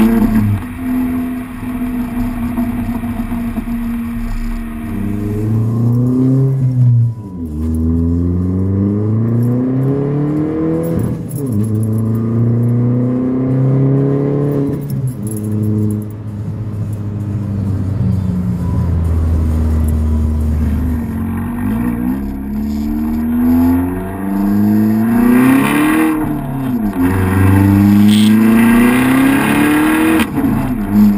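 2012 Chevrolet Sonic's 1.4-litre turbocharged four-cylinder through a ZZP cat-back exhaust with no muffler, accelerating under load through the gears: the exhaust note climbs in pitch over and over, each climb broken by a brief drop at the shift.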